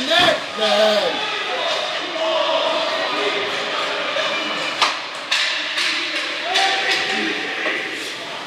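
Spectators' voices calling out in an ice rink, with sharp knocks from the play on the ice near the start and twice about five seconds in.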